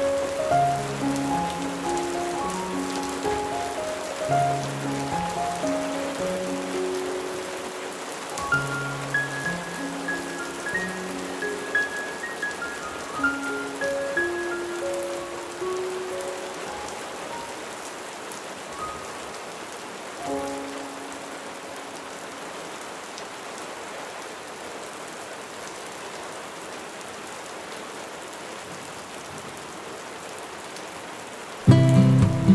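Steady heavy rain pattering on a window, with slow, gentle instrumental music of single sustained notes laid over it. The notes thin out through the first half and stop after about twenty seconds, leaving only the rain.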